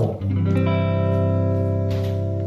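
Peerless archtop guitar playing a single chord, struck about a quarter second in and left to ring, slowly fading: the opening chord of the song.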